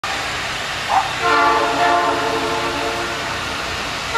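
A train's multi-note chime sounds one long blast starting just over a second in, after a brief rising note, and fades away, over a low steady rumble.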